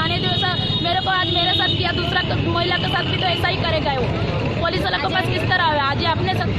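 Speech: a woman and others around her talking, with overlapping voices, over a steady low rumble of street traffic.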